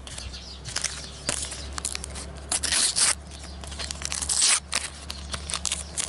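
Sticker packets being torn open and handled by hand: a few short rips of the wrapper, about a second apart, with crinkling and rustling of the wrappers and stickers.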